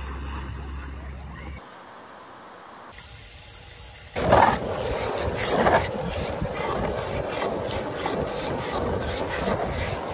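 Skateboard wheels rolling over rough asphalt, a steady gritty rolling noise that starts suddenly about four seconds in, after a few seconds of quieter noise.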